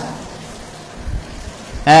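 A brief pause in a man's talk into a microphone: a faint steady hiss of room noise with a couple of soft low thumps about a second in, then his voice comes back near the end.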